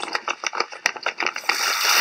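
A rapid clicking rattle for about a second and a half, then a steady rush of water that sets in and carries on.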